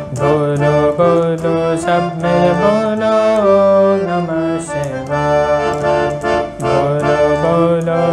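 Sare Gama harmonium playing a bhajan melody with chords: a changing line of reed notes over held lower notes.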